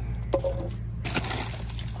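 Plastic litter and a woven plastic sack being handled among rocks: a sharp click, then a short crinkling rustle about a second in, over a steady low rumble.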